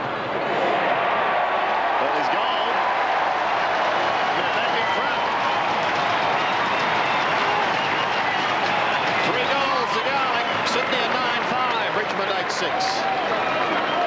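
Large stadium football crowd cheering and shouting, a dense, steady wash of many voices.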